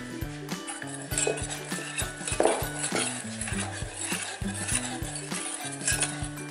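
A wire balloon whisk beating batter in a stainless steel bowl, its wires clinking repeatedly against the metal, as the first portion of meringue is mixed into the egg-yolk batter. Background music plays underneath.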